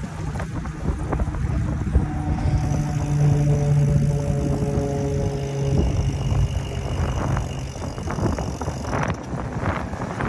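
Wind buffeting the microphone of a moving e-bike, with rolling noise underneath. A steady low hum with overtones comes in for a few seconds in the middle, and a few sharp clicks and rattles come near the end.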